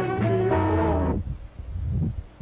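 Slow blues-rock band recording with an alto saxophone playing along, holding a note over the bass. About a second in, the music breaks off into a quiet, sparse pause.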